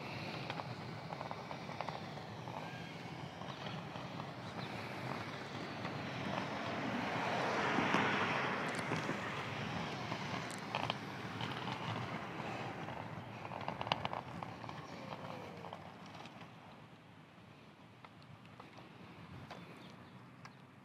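Electric inline skates with hub motors rolling on a paved path: an even rolling rush of the wheels that swells to a peak about eight seconds in and then fades, with a few sharp ticks along the way.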